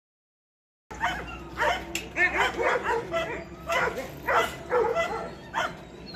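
Dogs barking and yipping repeatedly, about two barks a second, starting about a second in.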